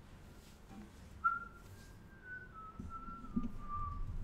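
A person whistling a soft, short tune, starting about a second in, that wanders up and down and drifts lower in pitch. Faint shuffling and a small knock of movement lie under it.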